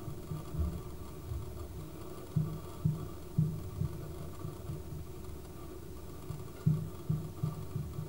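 Soft low thuds at irregular intervals, several in quick groups, over a faint steady hum.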